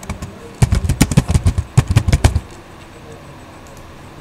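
Computer keyboard typing: a quick run of loud keystrokes that stops about two and a half seconds in.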